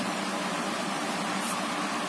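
Steady background hiss with no speech, with a brief faint high scratch about one and a half seconds in.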